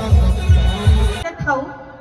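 Loud live concert music over a PA system with a heavy bass beat, about three thumps a second, cutting off abruptly just over a second in; a faint voice follows.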